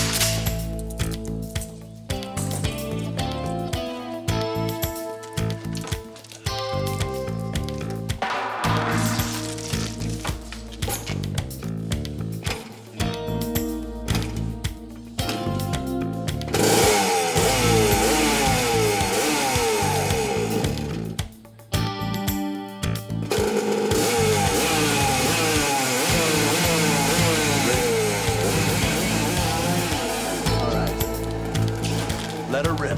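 Dramatic background music. About halfway through, a loud motorcycle engine joins it, revving up and down over the music.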